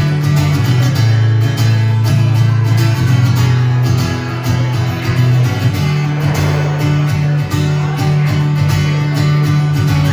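Acoustic guitar strummed in a steady rhythm, with low bass notes changing under the chords.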